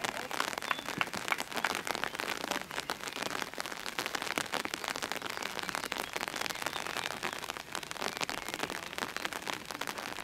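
Rain pattering steadily, a dense crackle of many small drops.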